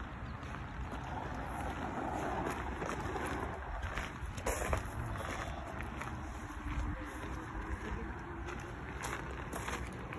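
Small utility vehicle's engine running, mixed with wind rumble on the microphone and footsteps on a gravel path.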